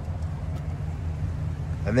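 A 5.3-litre V8 idling, heard as a steady low hum.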